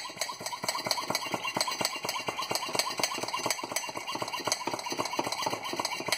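Hand-squeezed brake bleeder vacuum pump worked in quick repeated strokes, clicking several times a second as it draws air out of a mason jar through a vacuum-sealer lid attachment to vacuum-seal it.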